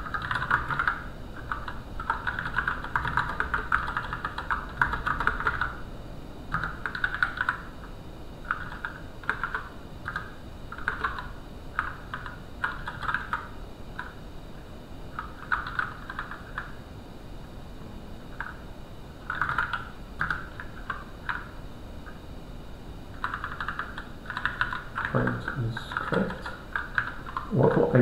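Typing on a computer keyboard: irregular runs of quick keystrokes broken by short pauses.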